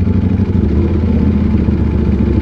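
Ducati Panigale V4's 1,103 cc V4 engine running steadily at low revs as the bike rolls slowly in traffic.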